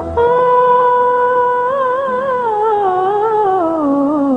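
A single voice sings a long 'ho ho' refrain of an old Nepali song: one held note that begins to waver after about a second and a half and then slides down in pitch in ornamented steps.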